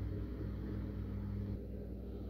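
A steady low hum. About one and a half seconds in, some of its tones drop out and it gets slightly quieter.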